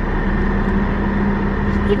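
Steady low hum inside a car's cabin while the car runs at a standstill, an even drone with no breaks.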